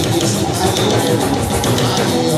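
Live band music with guitar and drums playing a steady beat.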